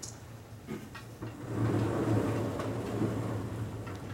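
Vertically sliding chalkboard panel being pushed up in its frame: a rumbling slide lasting about two and a half seconds, after a couple of light knocks.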